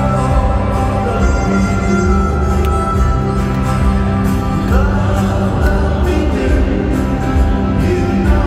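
Live band music played through an arena sound system, heard from among the audience: sustained chords over a steady bass line.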